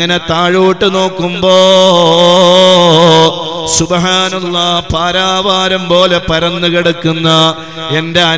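A man's voice chanting in a melodic, sing-song delivery into a microphone, holding one long wavering note about one and a half seconds in, then carrying on in shorter intoned phrases.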